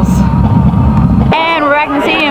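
Heavy low wind rumble buffeting the camera microphone, which cuts off abruptly at an edit about one and a half seconds in; a woman's voice follows.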